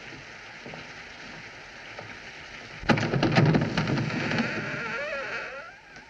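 A scuffle in the dark: a sudden run of loud thuds and knocks about three seconds in, followed by a wavering high sound that fades out near the end.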